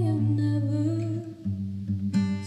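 A woman's voice humming a wordless line that slides slowly down in pitch, over held acoustic guitar chords. The chord changes about one and a half seconds in.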